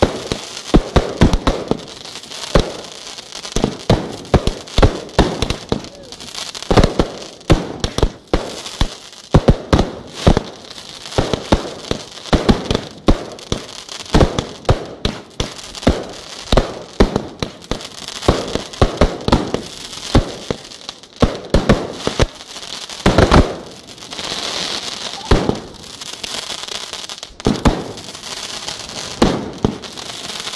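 Fireworks display: aerial shells and rockets going off in an irregular barrage of sharp bangs, several a second, with patches of crackling.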